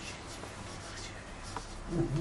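Felt-tip marker writing on a whiteboard, with a few faint short strokes as letters are drawn.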